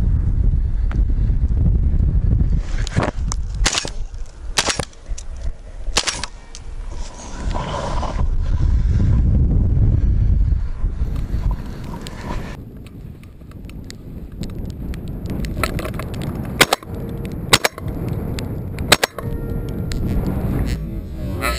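Wind buffeting the microphone, heavy for the first half and easing after, with several sharp knocks and clicks scattered through it; three stronger ones come close together near the end.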